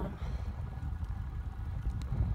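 Low, uneven rumble of wind and road noise on the microphone of a camera riding along on a road bike rolling over asphalt.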